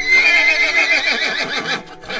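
A horse whinnying: one loud neigh that starts high and falls away in a quavering run, cutting off abruptly just before the two-second mark.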